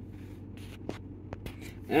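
Low steady hum of the Ford F-150's engine idling, heard inside the cab, with a few light taps of a finger on the scan tool's touchscreen in the second half.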